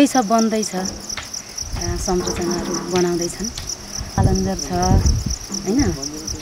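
Insects chirring in a steady, high, rapidly pulsing drone throughout, under a woman's speaking voice, which comes in several stretches and is the loudest sound.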